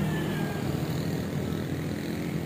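Steady engine and road noise of a vehicle moving slowly through traffic, a low even hum as heard from the moving vehicle.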